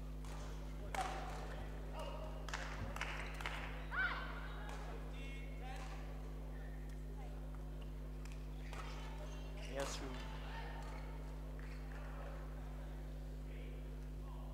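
Sports-hall ambience between games: a steady low electrical hum with distant voices and a few scattered short knocks and squeaks, the loudest about a second in, around 4 s and near 10 s.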